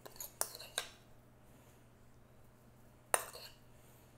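Metal spoon clinking against a ceramic bowl while salsa is spooned out: a few light clinks in the first second, then one sharper clink about three seconds in.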